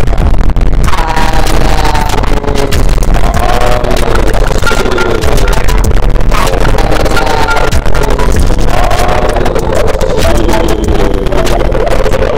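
Loud, harsh experimental electronic music built from layers of dither noise: a dense hiss and crackle over a constant deep bass note, with falling pitched sweeps recurring every two seconds or so.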